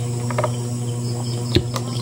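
A steady low hum with a few faint ticks, and one sharp knock about one and a half seconds in as the plastic gallon jug is handled and tipped to pour.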